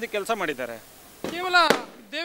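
Men talking in Kannada, with a short lull in the middle. A single sharp click comes near the end, where the background hum cuts off abruptly, as at an audio splice.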